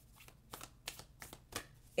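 Tarot cards being shuffled: a handful of quiet, short card flicks.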